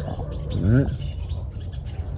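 Small birds chirping faintly in short high notes, with a brief voiced "uh" from a man about half a second in.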